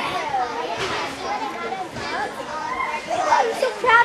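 Many children's voices talking and calling over one another at once, a steady background chatter.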